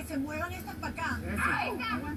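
Several people calling out at once, their voices overlapping, heard through a TV speaker over a steady low hum.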